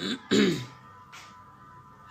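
A man's short throat-clearing sound at the start, falling in pitch and lasting about half a second, then quiet room tone with a faint steady hum.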